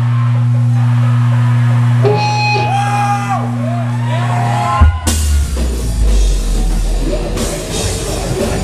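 Live deathcore band: a low guitar chord rings out steadily while a guitar bends high notes up and down over it, then about five seconds in the full band crashes into a heavy breakdown with drums and low-tuned guitars.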